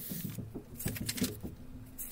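Paper pages of a book being turned by hand: a few short, crisp rustles and swishes of paper as a page is lifted and flipped over, with light handling noise from the fingers on the page.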